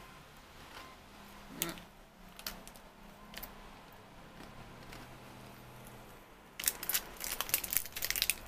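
A crunchy fried dough twist being chewed with the mouth closed, a few faint clicks in a mostly quiet stretch. Then, about six and a half seconds in, a burst of rapid crackling from the clear plastic wrapper around the twist being handled.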